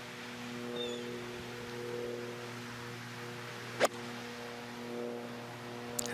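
A golf iron striking a ball on a fairway approach shot: one sharp click about four seconds in, over a steady low hum.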